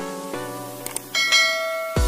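Background music with short, evenly struck notes, then about a second in a bright bell chime rings out and holds: a subscribe-notification bell sound effect.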